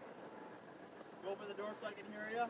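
Faint, muffled voices talking quietly inside a parked car, starting about a second in, over low background hush.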